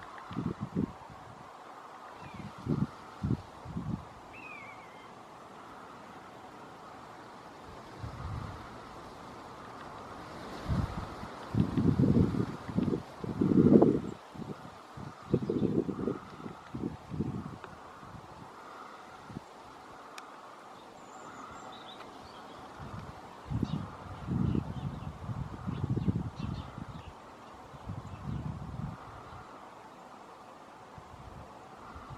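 Outdoor wind buffeting the microphone in irregular low gusts, strongest in two spells in the middle and later part, over a faint steady hum. A couple of faint short bird chirps sound early on.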